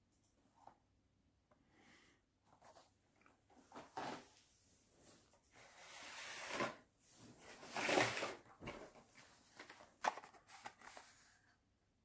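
Faint rustling and light knocks of Hot Wheels cars in card-backed plastic blister packs being handled, in several short bursts.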